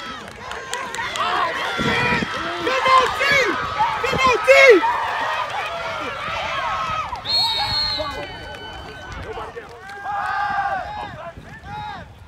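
Several people on the sideline shouting and cheering over one another, loudest about four to five seconds in.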